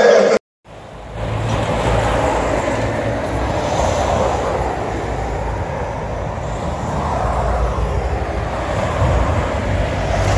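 A shout breaks off right at the start. After a short gap comes a steady outdoor rumble and hiss, uneven and strongest at the low end, that runs on without a break.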